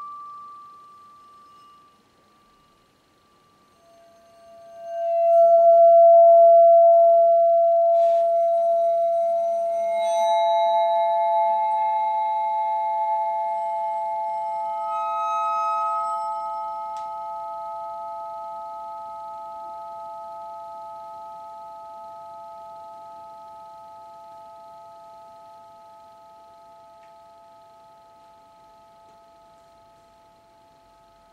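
Bell-like metal percussion ringing in pure sustained tones: a ringing tone dies away, then after a short near-quiet gap a low tone swells in, and higher tones are struck in one after another about eight, ten and fifteen seconds in. They all ring on together, slowly fading.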